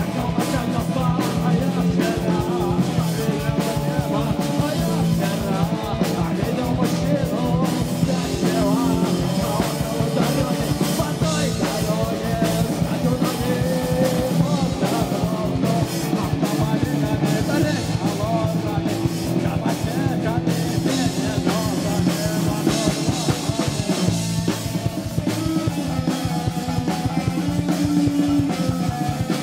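Live post-punk band playing: drum kit, bass guitar and electric guitar with sung vocals, a dense, steady rock groove.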